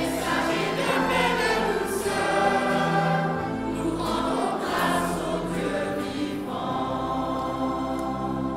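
A mixed choir of women and children singing together, holding long sustained notes.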